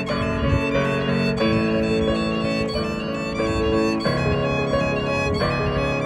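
Violin and piano duet: a bowed violin melody over sustained piano chords, the harmony changing about every second and a half.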